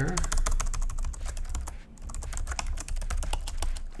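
Computer keyboard keys being typed in quick succession, with a brief pause about two seconds in.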